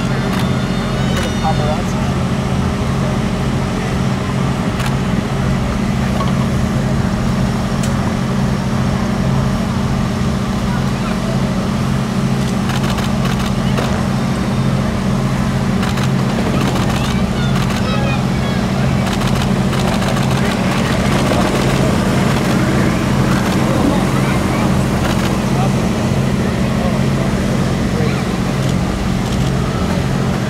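A steady low mechanical hum with scattered voices over it.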